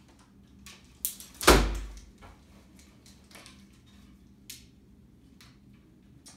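One shot from a Mongolian horsebow: a lighter click, then about one and a half seconds in a single loud, sharp thwack of the bowstring's release and the arrow striking the target. Afterwards come a few faint clicks of arrows being handled and nocked.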